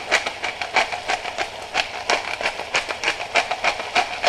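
Hand pepper mill being twisted to grind peppercorns: a steady, rapid run of crunchy clicks, about four a second.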